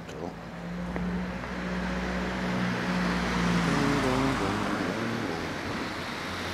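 A motor vehicle passing along the street: engine hum and road noise swelling to a peak a few seconds in, then fading.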